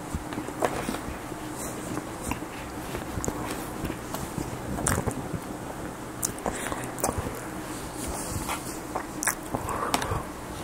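Close-miked chewing and biting of breakfast food, with irregular short clicks and wet mouth sounds and a fork clinking on the plate.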